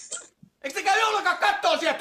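Speech: dialogue from the Finnish comedy sketch, starting about half a second in, after a short breathy sound at the very start and a brief pause.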